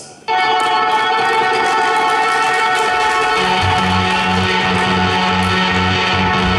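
Live instrumental rock from Chapman Stick and electric guitar: a sustained chord of many notes starts sharply about a quarter second in. About three and a half seconds in, a low bass line enters, pulsing in a steady rhythm.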